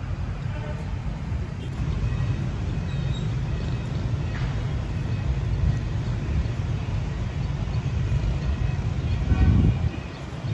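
Outdoor ambience dominated by a steady low rumble, with faint high chirps over it and a brief louder swell of the rumble near the end.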